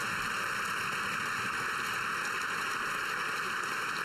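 Applause filling a large parliamentary chamber: a steady, even wash of clapping.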